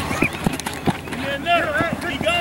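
Several dull thumps early on, then men shouting across the field from a little past the middle, in long, rising-and-falling yells.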